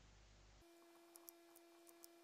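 Near silence: faint room tone carrying a steady faint electronic tone, with a few faint clicks from a computer mouse.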